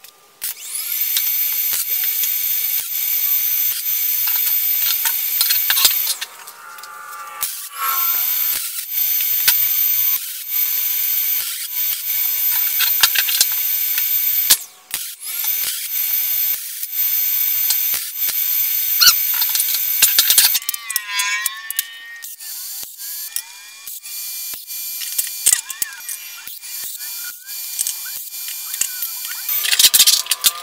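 MIG welder arc crackling and hissing steadily as joints in a frame of square metal tubing are welded: three runs of about five to six seconds each. After that come scattered clinks and scrapes of metal parts and magnets being handled.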